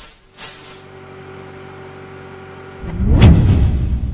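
Stock logo-sting sound design: a held electronic tone, then about three seconds in a sudden loud, deep boom with a whoosh that dies away.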